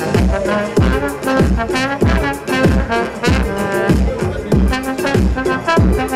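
Live electro swing music: a trombone plays a melodic line over a steady electronic beat with bass.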